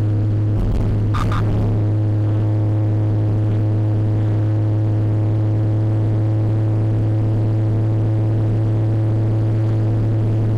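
Steady low drone inside the cabin of a 1951 Hudson Hornet cruising at highway speed, its engine and road noise holding one even pitch, with a brief clatter about a second in.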